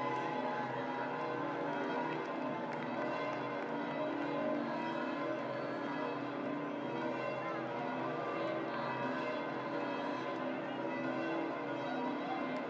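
Church bells pealing steadily, many tones ringing over one another, with crowd voices underneath.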